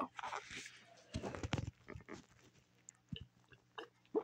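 Quiet drinking from a plastic sports-drink bottle: sips and swallows, with a burst of bottle-handling rustle about a second in and small mouth clicks after it.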